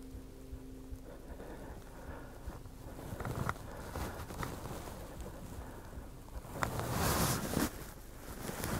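Quiet forest ambience with faint rustling and a few small clicks, a faint steady low hum for the first three seconds or so, and a louder rustle near the end.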